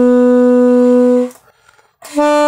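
Solo alto saxophone improvising: one long, steady low note held, cut off about a second and a quarter in, then a short breath-gap of near silence before the next phrase.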